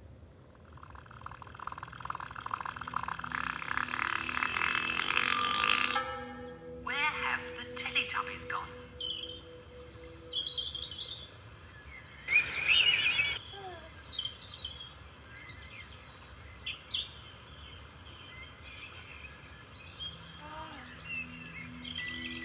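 Children's TV opening soundtrack heard through a television and recorded off the screen. A shimmering swell rises over the first six seconds and cuts off. Then come bird chirps over a soft repeating low tune, and a baby giggling about twelve seconds in.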